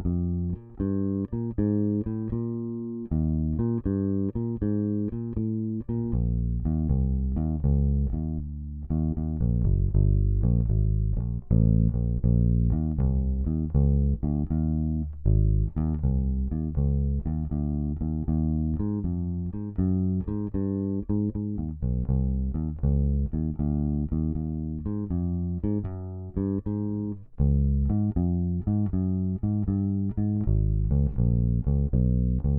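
Fender Precision Bass played unaccompanied: a steady stream of plucked single notes working through a chromatic etude at 79 bpm.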